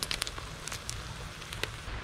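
A black scorpion frying in hot oil in a wok, the oil crackling with scattered sharp pops over a low steady rumble, as it is cooked on to make it crispy.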